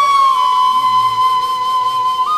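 Bansuri (side-blown bamboo flute) holding one long, clear note, dipping slightly in pitch about half a second in and then held steady.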